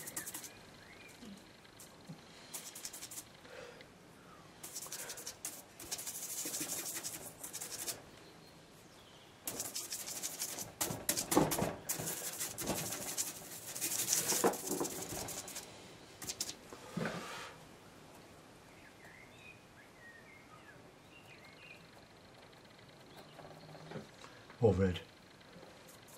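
Stiff bristle brush scrubbing and dabbing oil paint onto a hard MDF board, a scratchy rasp in bursts of quick strokes with short pauses between. The strokes stop a little over two-thirds of the way through, and the rest is quiet.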